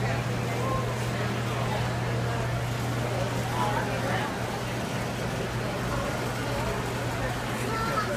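Indistinct chatter of a crowd of people, with voices coming and going, over a steady low hum.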